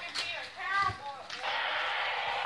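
A child's voice briefly, then a steady hiss lasting just over a second.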